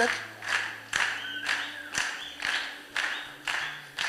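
Crowd clapping in a steady rhythm, about two claps a second, over held low keyboard notes.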